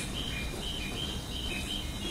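Crickets chirping in short, high, repeated chirps, several a second, over a steady low background rumble.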